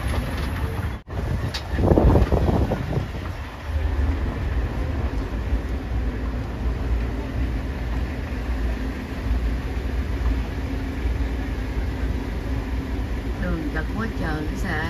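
Steady low rumble of a shuttle tram riding along a sandy road, heard from inside its cab, with a faint steady hum under it. The sound drops out briefly about a second in and is followed by a louder burst of rumble.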